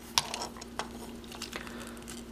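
Hard plastic parts of a Transformers Lockdown action figure clicking as they are unfolded and moved by hand: one sharper click just after the start, then a few faint ticks. A faint steady hum runs underneath.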